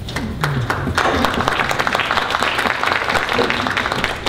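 Audience applause: a dense patter of many hands clapping that swells in about a second in and eases off near the end.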